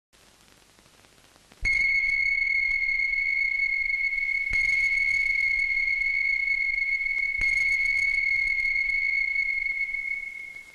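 A steady high-pitched tone that starts suddenly about one and a half seconds in and holds level, with a faint click about every three seconds, fading at the very end.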